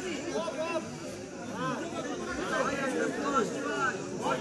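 Several voices talking over one another: chatter among players and spectators at a cricket ground.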